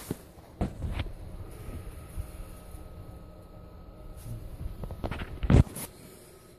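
Low rumbling handling and movement noise with a few short knocks, the loudest a sharp knock about five and a half seconds in.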